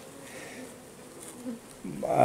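Honeybees buzzing on an open comb frame lifted out of the hive: a faint, steady hum of the colony.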